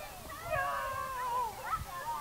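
Children calling out at play, several high voices gliding up and down in pitch.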